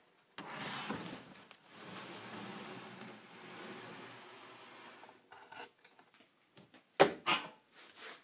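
A heavy rough-sawn wooden plank being slid along saw tables: a long, steady scraping rub of wood on the table surface lasting several seconds. Near the end come two sharp knocks.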